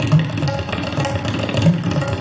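Tabla solo: fast, dense strokes on the wooden dayan with two deep, booming bass strokes on the metal bayan, about a second and a half apart. A harmonium holds a steady repeating melody (lehra) behind the drums.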